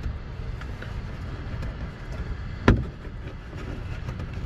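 A plastic push-in retainer clip being worked into a truck's plastic fender liner by hand, with one sharp click about two and a half seconds in, over a steady low background rumble.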